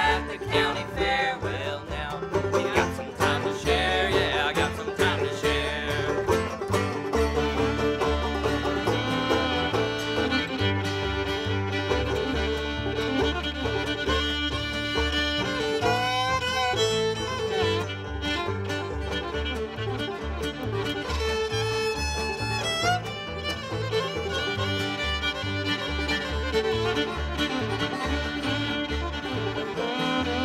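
Bluegrass string band playing an instrumental passage: fiddle, banjo, acoustic guitar and upright bass over a steady bass rhythm. The fiddle takes the lead through the middle, with wavering, sliding notes.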